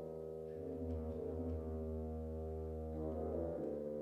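Ten-piece wind ensemble sustaining a slow, low chord over a held bass note, the harmony shifting about three and a half seconds in.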